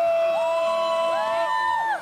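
Live female vocal trio holding long notes in harmony, the voices entering one after another and stepping up in pitch, over crowd noise.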